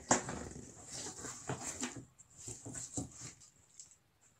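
Cardboard box flaps and tissue paper rustling and crackling as a package is opened and an item is lifted out, irregular for about three seconds, then much quieter near the end.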